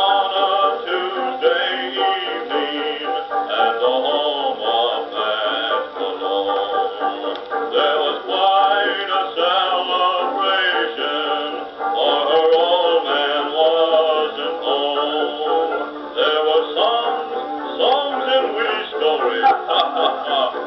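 1920s dance orchestra playing a peppy fox trot, heard from a 78 rpm record. The sound is thin, with no deep bass and no high treble.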